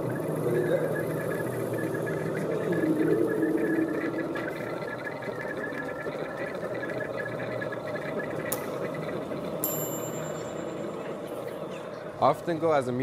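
Electroacoustic sound-art drone: a dense, steady low rumbling texture with faint high tones above it and a single click about eight and a half seconds in.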